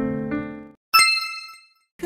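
Piano music dies away under a second in, then a single bright bell-like ding chime rings out and decays, a quiz sound effect marking the answer reveal.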